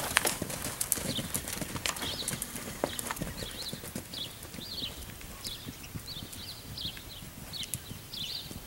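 Several mustangs' hooves trotting on the dirt of a corral: an uneven run of hoof beats, busiest in the first few seconds.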